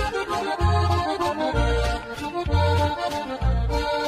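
Norteño accordion playing an instrumental break between sung verses of a corrido, over low bass notes falling about once a second in a steady beat.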